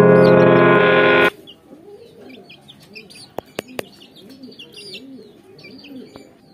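Loud background music cuts off suddenly just over a second in. Then come quieter bird sounds: pigeons cooing over and over, with high chick peeps, and three quick sharp clicks near the middle.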